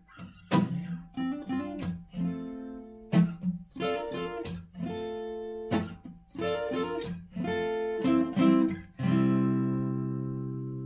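Solo Gibson acoustic guitar played with plucked notes and chords, closing the song on a final chord about nine seconds in that is left to ring and slowly fade.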